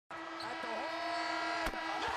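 Basketball court sounds: short squeaks of sneakers on the floor, and one sharp ball bounce about three quarters of the way through, over a steady hum of held tones.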